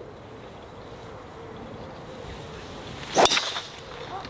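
A golf driver swung through with a short whoosh, then a single sharp crack as the clubhead strikes the ball off the tee, about three seconds in. The drive is struck slightly off the toe.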